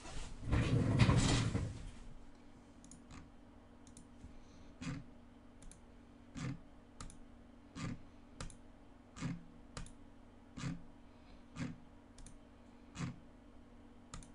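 Computer mouse clicks, one about every second, often in close press-and-release pairs, as the randomize button is clicked again and again. A louder noise fills the first two seconds.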